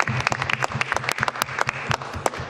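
Members of a legislature applauding: many quick overlapping claps that thin out near the end.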